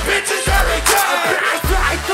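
Loud live crunkcore music with deep bass hits about once a second, each dropping in pitch, and rapped vocals over the beat.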